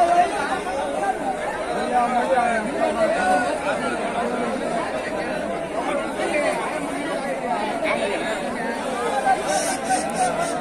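Crowd chatter: many people talking at once in an even babble at a busy livestock market.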